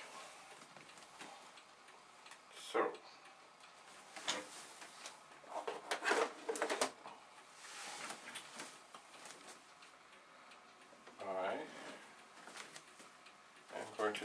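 Objects being handled and moved about on a table: scattered light clicks and knocks at irregular intervals, with a brief murmured voice near the end.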